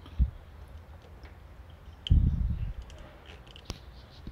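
Light metallic clicks of needle-nose pliers working a spring clip on a carburetor vacuum hose. There is a short low thud just after the start and a louder dull rumble of handling about two seconds in.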